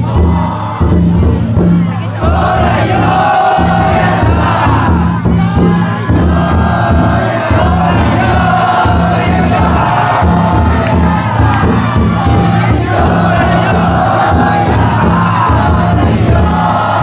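Taiko drum inside a Banshu yatai festival float beaten in a steady rhythm, with a large crowd of float bearers shouting chants over it.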